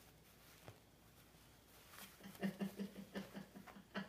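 Faint scuffs at first. About halfway in, a person's stifled laughter starts: short pitched pulses, about five a second, that carry on to the end.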